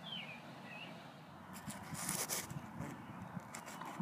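Faint outdoor ambience with a bird chirping briefly at the start, then a short rustle about two seconds in and a few light clicks near the end.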